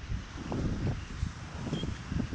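Wind buffeting the camera microphone in irregular low gusts over a faint steady hiss.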